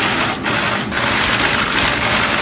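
Many camera shutters clicking rapidly at once, overlapping into a dense, continuous clatter.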